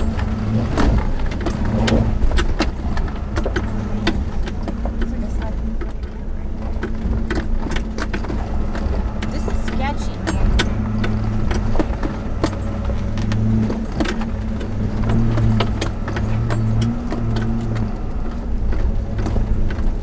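2003 Land Rover Discovery 2's V8 engine running at low revs in the cabin as the truck crawls over rough ground, a steady low drone. Over it come frequent clicks and rattles as the body and loose contents jolt on the rocks.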